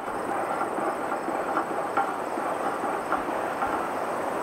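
Bee smoker being lit: its paper-towel and pine-shaving fuel catching, a steady rushing hiss with a few faint crackles.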